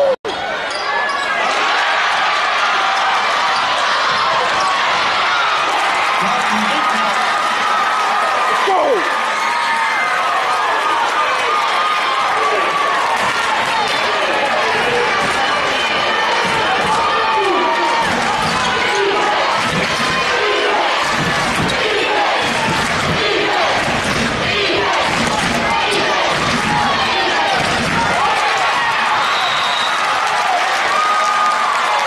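Basketball dribbled on a hardwood gym floor, with steady bounces about once a second through the second half, over the chatter and shouts of a gym crowd.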